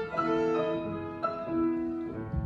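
Grand piano and violin playing a slow waltz phrase, held notes changing about every half second.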